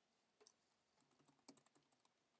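Faint computer keyboard typing: a scatter of quick key clicks starting about half a second in, coming thickest in the second half.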